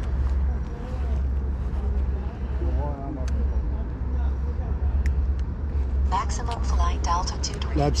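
Steady low outdoor rumble, with people talking in the background around three seconds in and again from about six seconds, and a man calling "Lads" at the very end.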